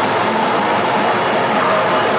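Hardcore punk band playing live at full volume: a dense, steady wall of distorted guitar with no clear breaks.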